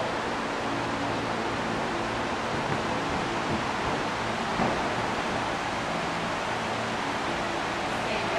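Steady hiss of background noise with a faint low hum, and a soft thump about four and a half seconds in.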